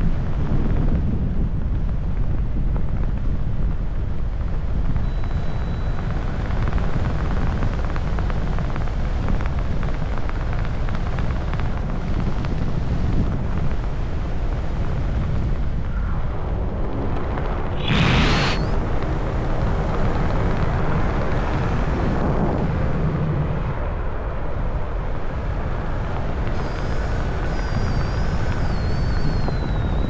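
Wind buffeting the camera's microphone during a parachute canopy descent: a steady rough low rumble, with a brief sharper gust about eighteen seconds in.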